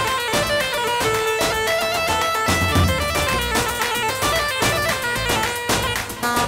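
Live Kurdish wedding dance music from a keyboard band: a lead melody moving in steps over a steady, quick drum beat.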